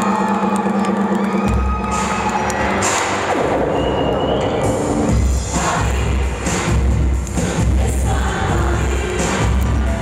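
A live band starts an electropop song intro with a crowd cheering: a held synth tone at first, then a steady kick-drum beat of about two thuds a second comes in about halfway through.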